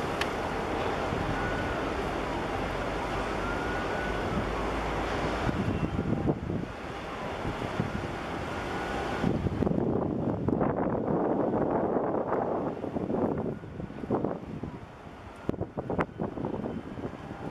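Wind buffeting the microphone over the steady noise of a large bulk carrier and its wake passing close by. The wind turns gustier and more uneven about two-thirds of the way through.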